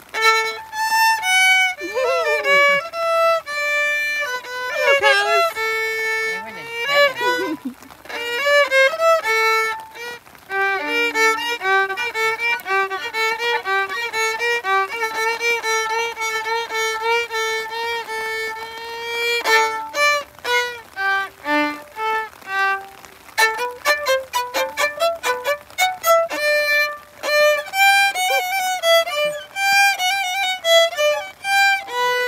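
A violin played solo: a melody of long, sustained bowed notes, turning to shorter, choppier strokes in the last third.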